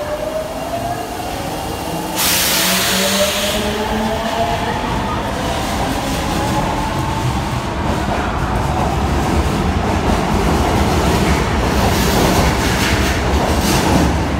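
Osaka Metro 22 series subway train pulling out of the platform: its traction motors whine, rising in pitch as it gathers speed. There is a short burst of hiss about two seconds in, and wheel rumble and clatter grow louder as the cars pass.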